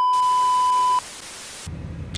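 TV colour-bars test-tone sound effect: a steady, loud, high beep that lasts about a second over a hiss of static. The static runs on a little longer and then cuts off suddenly.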